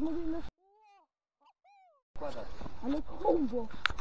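Low, muffled talking, broken by about a second and a half of dead silence where the sound cuts out completely; a single sharp click near the end.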